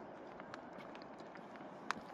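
Faint footsteps of a person walking on a rough gravel path, with a few light clicks and one sharper click near the end, over a soft steady hiss.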